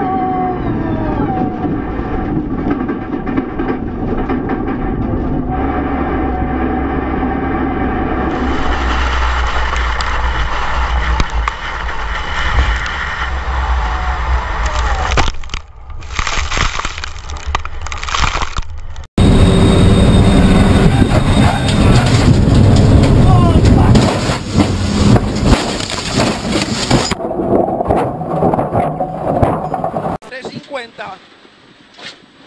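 Race car engines at high revs heard from inside the cockpit, the note rising and falling through the gears, first a Porsche race car on a circuit and later a rally car. Sharp knocks and crash noises break in toward the middle.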